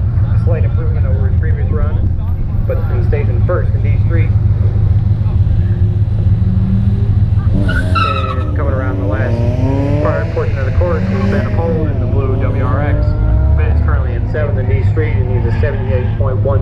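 Chevrolet Camaro's engine idling with a steady low rumble, heard from inside the car. About eight seconds in, tires squeal briefly.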